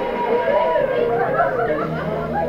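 Several people chattering at once, their voices overlapping so that no single speaker stands out.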